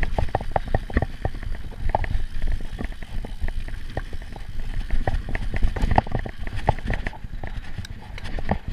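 Giant Trance Advanced full-suspension mountain bike descending rough dirt singletrack at speed: a continuous low rumble from the tyres over the trail, with many irregular rattles and knocks as the bike clatters over roots and bumps.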